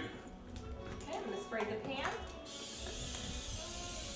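Aerosol cooking spray hissing steadily onto a frying pan, starting about halfway through and keeping on; faint speech before it.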